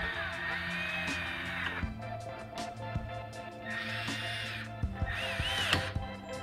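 Handheld power drill driving the screws that hold the slipfitter's cover, run in three short bursts: one of nearly two seconds, then two shorter ones near the end. The motor's whine rises and falls within each burst. Background music plays underneath.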